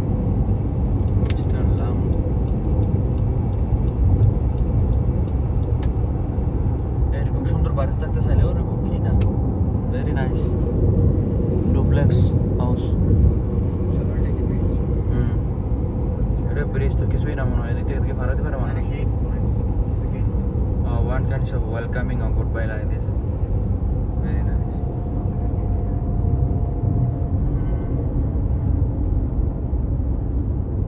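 Road and engine noise heard inside a car's cabin while driving at highway speed: a steady low rumble.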